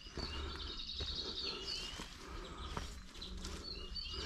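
Songbird singing: a high, warbling phrase lasting nearly two seconds, then a brief call near the end.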